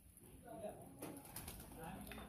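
Faint background of distant people's voices with bird calls.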